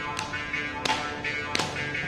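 Mridangam and morsing (Carnatic jaw harp) playing together in a percussion solo: sharp, ringing drum strokes, a few heavy ones with lighter ones between, over the morsing's twanging, pulsing tone.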